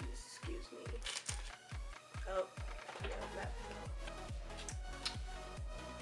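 Background music with a steady beat of about four beats a second; a low bass tone comes in underneath about three seconds in.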